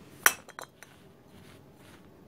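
Steel spin-on oil filter canisters clinking together as one is set back down beside the others: one sharp clink about a quarter second in, then a few lighter taps.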